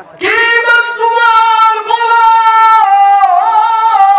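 A man's voice holding one long, high sung note in the melodic chanting style of a Bengali Islamic sermon (waz). It starts a moment in, stays nearly level with a slight waver near the end, and carries on past the end.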